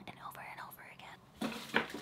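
A woman's faint whispered voice, muttering under her breath between sentences, growing briefly louder near the end.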